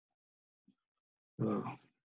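Near silence, then a man's hesitant "uh" about one and a half seconds in.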